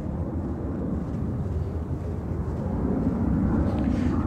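Low, steady rumble of wind buffeting the microphone of a handheld camera outdoors, faintly rising toward the end.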